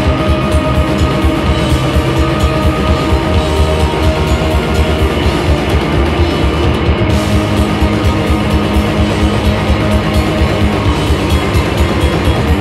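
Live rock band playing loudly: distorted electric guitar and bass over a drum kit keeping a steady beat, in a dense, sustained passage.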